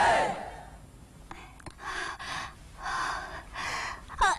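Crowd shouting cuts off in the first half second. Then a woman gasps, with two or three long, heavy breaths.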